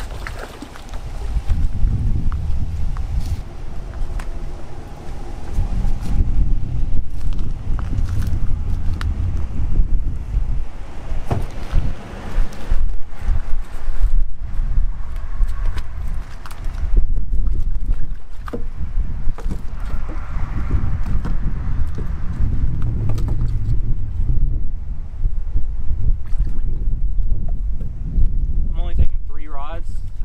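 Wind buffeting the microphone in a loud, gusting rumble, with scattered knocks and clicks from fishing gear being handled.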